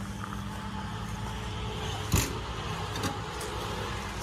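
Steady low electrical hum of 110 kV substation equipment, with a sharp click about two seconds in and a fainter one a second later.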